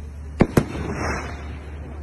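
Fireworks: two sharp bangs in quick succession about half a second in, followed by a brief crackle.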